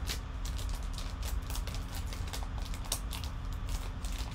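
Foil trading-card pack crinkling and tearing as it is opened by hand: an irregular string of short, sharp crackles.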